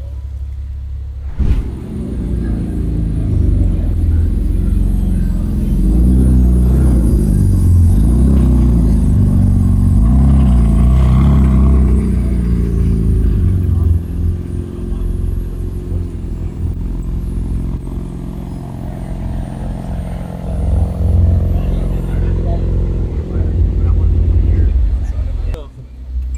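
McLaren Artura's twin-turbo V6 hybrid running as the car drives in and manoeuvres, its engine note rising and falling, with people talking around it.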